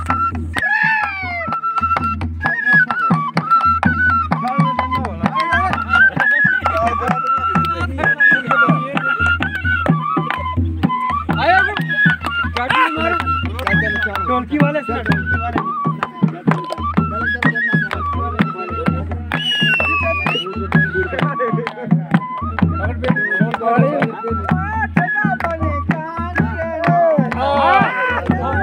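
Folk music on a dholak drum, its low strokes keeping a steady beat of about two a second under a wavering, bending melody.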